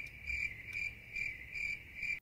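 Crickets chirping: a steady high trill pulsing a little over twice a second, the stock "crickets" sound effect used to mark an awkward silence.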